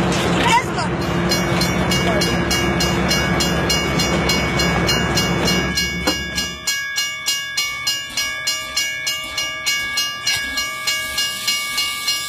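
Steam locomotive chuffing in a steady rhythm of about three beats a second, with steady high tones held over it in the second half. The first half is buried under loud crowd noise.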